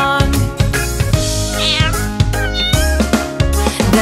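Upbeat children's song accompaniment with a cat meowing over it.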